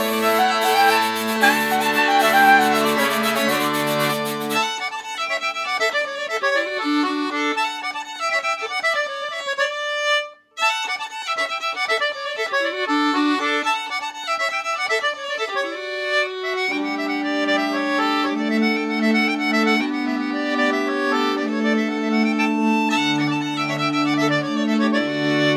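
Folk quartet of soprano saxophone, fiddle, accordion and hurdy-gurdy playing a Swedish-style tune. The full band with its low sustained notes drops away about five seconds in, leaving a lighter, higher texture with a brief break about ten seconds in, and the full band with the low notes comes back in about seventeen seconds in.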